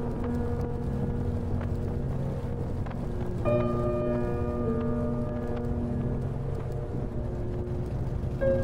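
Harley-Davidson V-twin motorcycle engine and wind rumbling steadily while riding, with music playing over it in sustained notes that shift to a new chord about three and a half seconds in.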